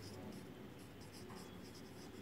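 Pencil writing on paper: faint, short scratching strokes as a word is written by hand.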